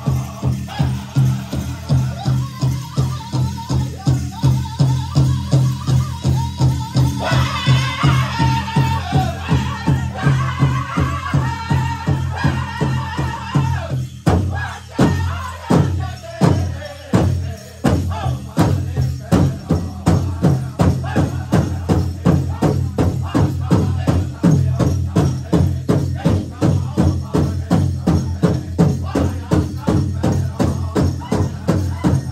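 Powwow drum group: several drummers strike one large drum in a steady, fast beat while singers sing over it. About halfway through, the even beat breaks for a few widely spaced strikes, then the steady drumming resumes.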